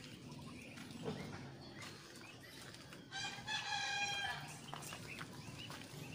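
A rooster crowing once, about three seconds in, a single steady call lasting just over a second.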